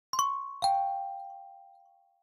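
A two-note 'ding-dong' chime: a bright high note struck twice in quick succession, then a lower note about half a second in that rings on and fades away over about a second.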